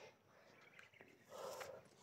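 Near silence, with one faint, short animal call about a second and a half in.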